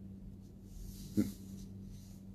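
Pause in talk, with a low steady hum; a little over a second in comes one brief, low vocal noise, like a short grunt or throat sound.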